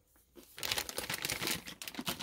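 Plastic snack bag crinkling as it is handled, starting about half a second in and going on steadily.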